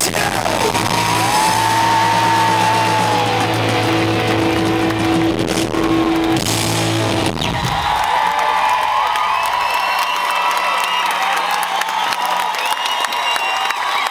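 Live rock band holding a loud final chord through the PA, with the crowd whooping and whistling over it. About seven seconds in, the chord cuts off with a falling sweep. The crowd cheers and whistles after that.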